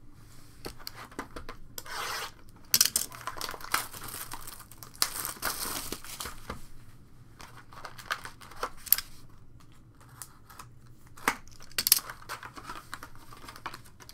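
Foil trading-card pack wrappers being torn open and crinkled, a long run of rustling with scattered sharp clicks and taps from handling the cards and cardboard box.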